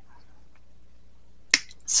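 Quiet room tone, then a single sharp click about one and a half seconds in, just before talking resumes.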